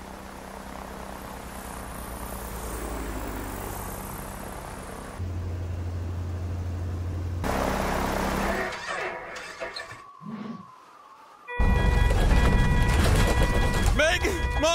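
Animated-cartoon sound of a small single-engine propeller plane in flight: a rising rush of air, then a steady low engine drone, fading away about ten seconds in. Loud music starts near the end.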